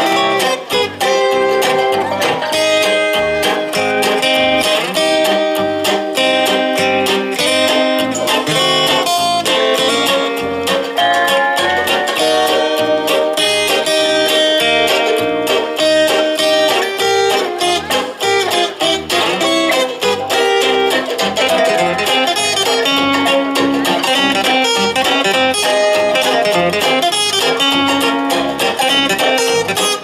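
Guitar music: plucked and strummed strings playing a steady, rhythmic tune.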